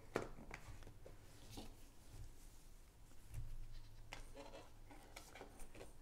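HEPA filter frames being slid into the slots of a 3D-printed plastic housing: one sharp click just after the start, then a few faint taps and scrapes of plastic on plastic.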